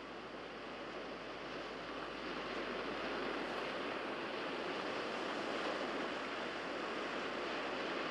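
Steady wash of sea surf, growing a little louder over the first few seconds and then holding even.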